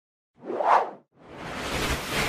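Two whoosh sound effects for an animated logo: a short swish about half a second in, then after a brief gap a longer one that swells up toward the end.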